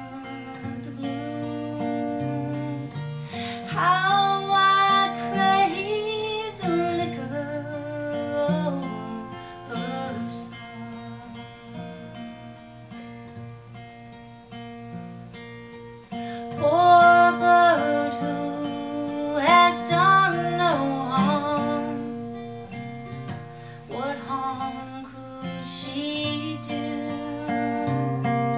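Acoustic guitar accompaniment with a woman singing over it in phrases that come and go, with guitar alone between them.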